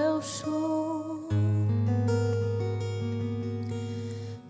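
Acoustic guitar accompaniment with chords ringing and held, under a woman's sung note that wavers and ends a little over a second in, leaving the guitar alone.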